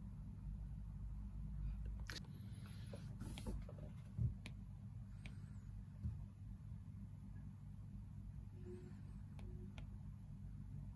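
Apple Pencil 2 tip tapping and sliding on an iPad's glass screen: a few faint sharp clicks spread through, and a soft scratchy stroke from about two to three and a half seconds in. A dull low thump about four seconds in is the loudest sound, over a steady low background hum.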